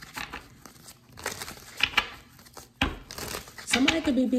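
A deck of tarot cards being shuffled between the hands: a run of irregular, papery swishes and flicks.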